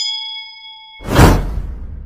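Subscribe-button animation sound effects: a bell-like ding rings for about a second. Then a loud whoosh with a deep boom bursts in about a second in and fades out.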